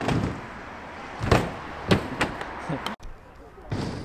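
Freestyle scooter coming down off a jump onto the concrete funbox and ground: a series of sharp knocks and clatter from the deck and wheels, the loudest about a second in.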